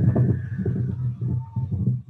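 Small wind turbine spinning fast in strong gusty wind, heard in a recording played over a video call: a steady low hum with rapid fluttering, and a faint higher whine that rises and then falls.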